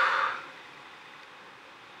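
A brief breathy rush of noise at the start, then a faint steady hiss.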